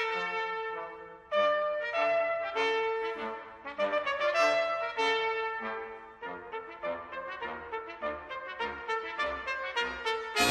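Trumpets play a melodic line of short, changing notes over lower brass parts in a brass ensemble, with a brief break in the line about a second in.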